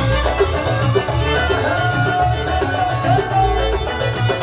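Live orkes gambus band playing an instrumental passage of Yemeni-style Arabic music: a stepping melody over a steady, pulsing drum beat.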